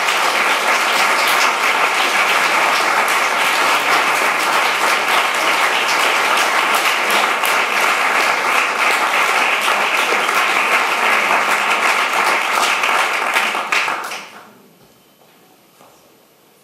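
Audience applauding: dense, steady clapping that dies away about fourteen seconds in, leaving quiet room tone.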